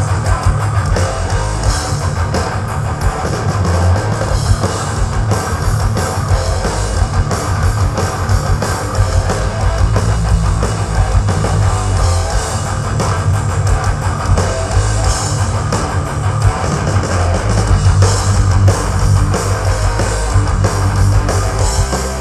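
Thrash metal band playing live: distorted electric guitars, bass and fast drum kit, with no vocals.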